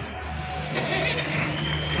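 A vehicle engine idling with a steady low hum, with music playing in the background.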